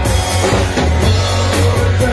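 Live rock band playing loud: drum kit with cymbals, electric guitar and bass guitar.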